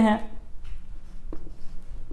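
Marker pen writing on a whiteboard: a few short, separate strokes as letters are written.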